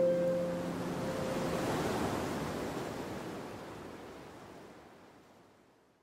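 A wind-like whoosh sound effect that swells for about two seconds, then slowly fades away to nothing. The last harp note of the intro music rings out under its start.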